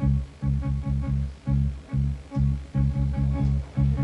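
Live band playing a chugging riff of short, repeated low notes on bass and guitar, in an uneven rhythm of a few notes a second.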